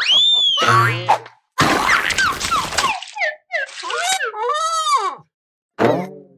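Cartoon sound effects: a boing that rises and falls at the start, then a splashy noise with quick falling chirps as a character lands in mud. After that comes a cartoon character's wordless vocal sounds, rising and falling in pitch.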